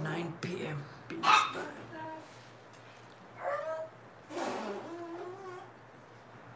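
A person's voice in several short stretches of unclear speech or vocal sounds, with brief pauses between.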